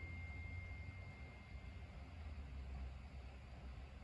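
Quiet room tone: a steady low hum, with a faint thin high tone that fades away in the first second and a half.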